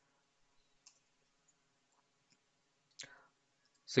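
Mostly near silence, broken by a couple of faint computer clicks: a single click about a second in and a short faint sound about three seconds in.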